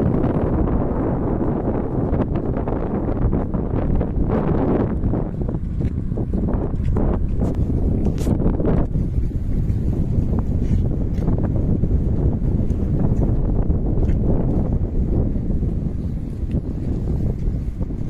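Wind buffeting the microphone: a loud, continuous low rumble that flutters with the gusts, with a few brief crackles in the middle.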